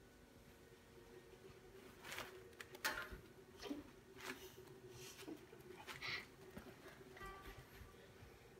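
Faint, scattered soft giggles and small fidgeting noises over a faint steady hum, with no song played yet.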